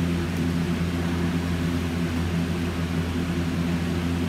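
Steady low hum of a running appliance, an unchanging drone with a few fixed low tones.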